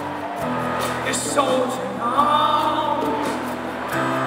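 Live band playing a song: a male lead vocal sung into a handheld mic over acoustic guitar and keyboard, with a steady bass underneath.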